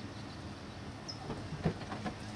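A car door being unlatched and swung open: a few short knocks and clicks about a second and a half in. A bird gives a short, high chirp just before.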